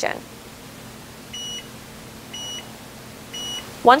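Stahls' Hotronix sports ball heat press timer beeping three times, short high tones about a second apart, signalling that the pressing time is up.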